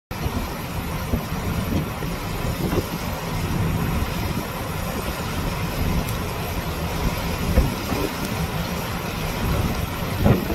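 Storm-force nor'easter wind buffeting the microphone in gusts, a heavy, constant low rumble, over the steady wash of heavy surf.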